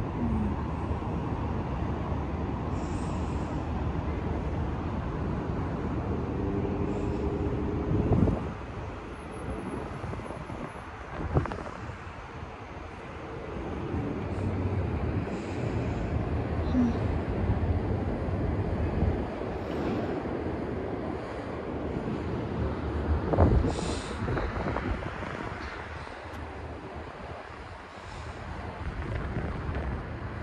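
Steady road and engine rumble heard from inside a moving car, with three sharp thumps spread through it.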